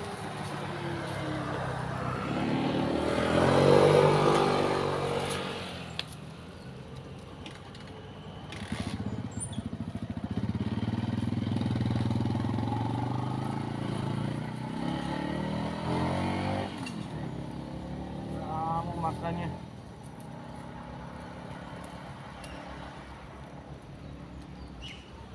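Motor vehicles passing on the road: one engine swells loud about four seconds in and fades away, another runs steadily through the middle, and an engine revs up briefly near the end.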